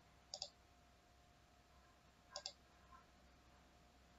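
Computer mouse button clicks: two quick double clicks about two seconds apart, with a fainter click shortly after the second, against near silence.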